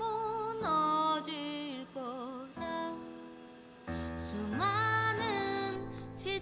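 A woman singing a slow ballad with a folk-inflected vocal style and wavering vibrato over soft accompaniment. She sings in separate phrases, with a quieter gap a little past the middle.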